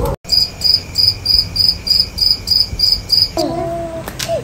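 Crickets chirping in an even rhythm, about three high chirps a second, which stop abruptly near the end.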